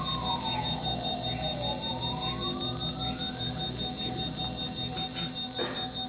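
Live experimental electronic music: steady high and middle tones held over a low drone, with a sliding pitch that falls over the first second and a half, then another that rises for about two seconds. A short rush of noise comes near the end.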